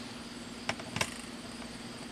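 Two light clicks, about 0.7 and 1 second in, as a thin metal support rod is handled and fitted into a shooting chronograph's body, over a steady low hum.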